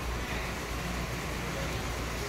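Steady background hum and hiss of an indoor aquarium touch-pool area, with no distinct sound standing out.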